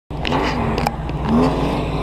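Lifted off-road pickup truck's engine running under load as it climbs a snow-covered trail, the revs rising in short surges. Two brief sharp clicks sound within the first second.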